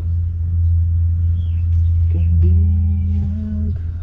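Vehicle engine idling with a steady low rumble.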